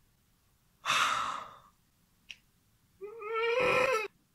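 A young woman's breathy sigh about a second in, then near the end a high-pitched squeal held for about a second.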